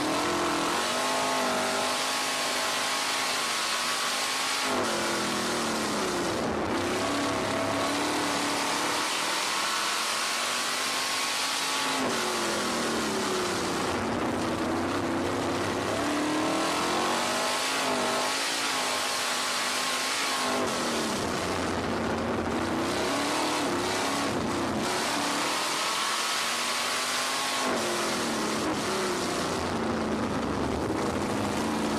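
RaceSaver 305 sprint car's V8 engine racing at full throttle, heard from on board: the revs climb down each straight and drop as the driver lifts for each turn, several times over, with heavy wind rush over the microphone.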